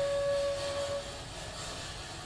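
Background flute music: a single long held flute note that fades out about a second in, followed by a brief quieter gap between phrases.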